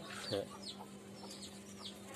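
Birds chirping in the background: short, high chirps that fall in pitch, several a second, over a steady low hum, with a brief lower call about half a second in.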